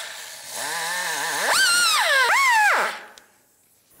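Power drill spinning a small abrasive sanding disc against a starter cable's metal terminal tab to clean it. The motor whine rises and falls in pitch twice as the trigger is worked, then winds down about three seconds in.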